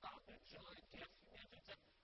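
Only speech: a man talking continuously in French, recorded very faintly.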